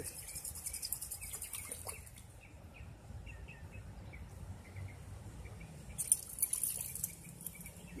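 Small birds chirping faintly, a string of short high chirps through the middle, over a low outdoor rumble. About six seconds in, a brief rough hissing burst is the loudest sound.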